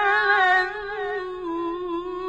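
A solo voice humming a slow wordless melody, with long held notes and small ornamented turns.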